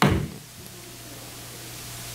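A single knock at the very start, a hand striking the wooden lectern, dying away quickly. After it there is only the hiss of room tone with a faint steady hum.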